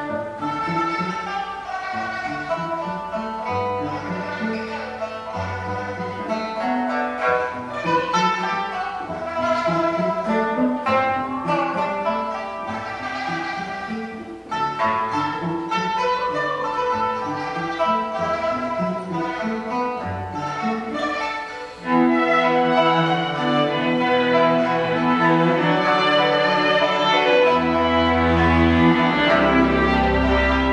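Chamber ensemble playing a contemporary piece, led by bowed strings: cello and double bass, with violin. About two-thirds of the way through the music turns suddenly louder and fuller, with deep bass notes.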